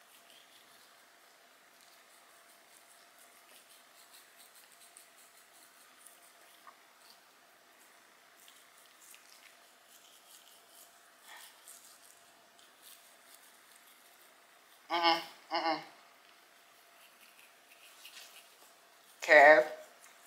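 Faint, quick scratching of a toothbrush scrubbing a small dog's teeth. A man's voice breaks in with two short sounds about three-quarters of the way through and once more near the end.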